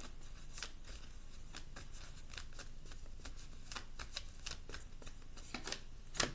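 A deck of tarot cards being shuffled by hand: a run of light, irregular card clicks, several a second.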